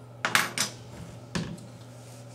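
Light metal clicks and clinks as an AK-47's removed safety lever and the stripped rifle are handled: a quick cluster of clinks a quarter second in, then a single click about a second later.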